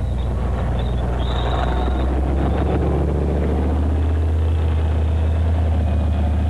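Leopard 1 tank's V10 diesel engine running steadily under load as the tank drives off, with a rapid clatter from its tracks. A brief high squeal comes a little over a second in.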